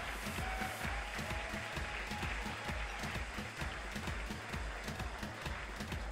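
Audience applauding over background music with a steady beat.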